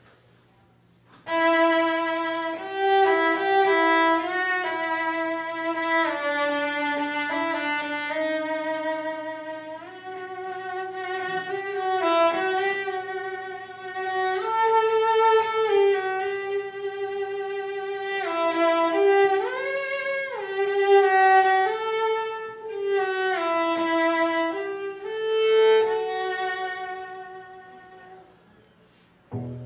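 Solo cello played with the bow in long, slow sustained notes, some sliding between pitches. It begins about a second in and fades out near the end.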